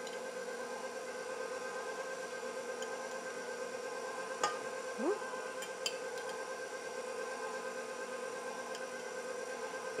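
A KitchenAid stand mixer's motor running at a steady speed with an even hum, beating a very thick cake batter. A few light clicks come around the middle.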